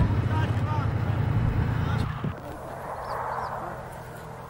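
Tank's diesel engine running as the tank drives, a heavy low rumble that drops away suddenly about two seconds in. After that it is much quieter, with a few faint high chirps.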